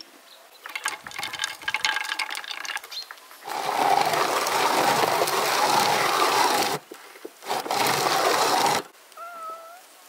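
Hand-cranked rotary drum grater grinding nuts into a glass bowl: a crackling, clicky grind at first, then a louder steady rasp in two stretches as the drum is turned. A short cat meow near the end.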